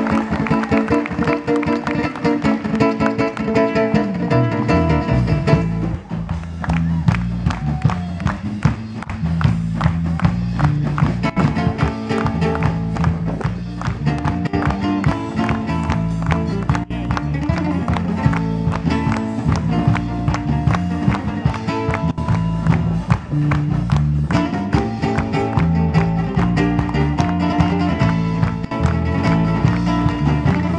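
Live band playing an instrumental passage: guitar picked and strummed over bass guitar and drums, with regular drum strokes. A deep stepping bass line grows strong about four to five seconds in.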